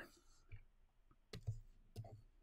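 A few light clicks and taps of a stylus on a drawing tablet, spaced unevenly over quiet room tone.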